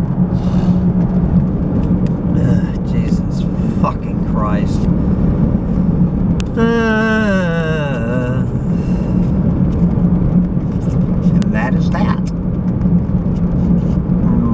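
Truck engine and road noise heard from inside the cab while cruising, a steady low drone. About seven seconds in, a voice gives one long wordless sound that falls in pitch, with a few short vocal noises around it.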